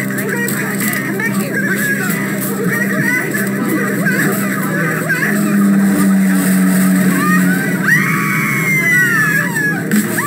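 Film soundtrack mix: panicked passengers crying out over dramatic music, with a steady drone underneath and a long, slowly falling cry near the end.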